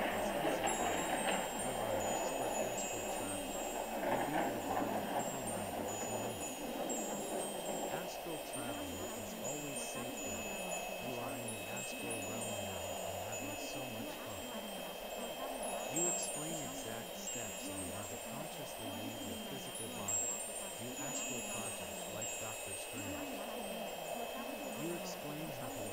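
Ambient meditation soundscape of tinkling wind chimes over a steady drone, with a faint, barely audible voice murmuring underneath, as in a subliminal affirmation track.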